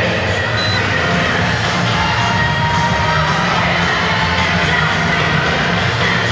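Loud music playing steadily, with crowd noise and cheering mixed in.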